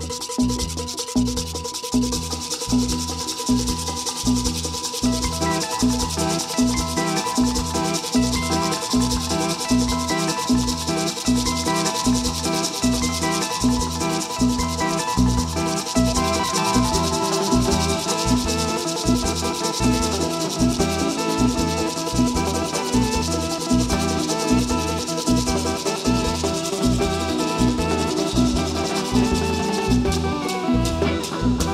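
Live band music with a steady beat: drum kit and keyboard over a scratchy, rhythmic percussion layer.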